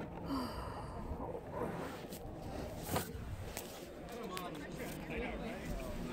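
Faint, muffled voices over a low background rumble, with a single sharp click about three seconds in.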